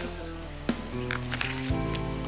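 Soft background music of sustained held notes, moving to a new chord near the end.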